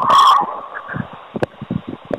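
Telephone-line noise on a poor-quality call recording: a short loud burst of distortion at the start, then low hiss with scattered crackles and clicks.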